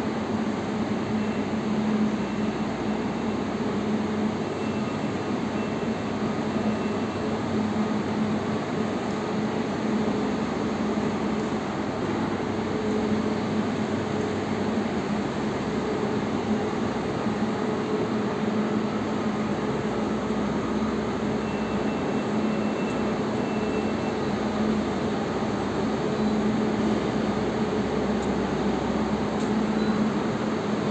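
Steady hum of electric commuter trains standing at the station platforms, over the even background noise of a large station hall.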